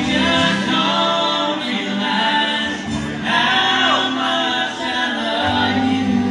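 Live music: a man and a woman singing together into microphones over an acoustic guitar.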